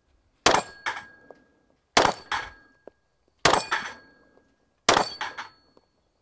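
Four 9mm pistol shots from a Glock 17 Gen 5, fired slowly at about one and a half second intervals. Each is followed a fraction of a second later by a sharp clang and a brief ring from a steel knock-down target.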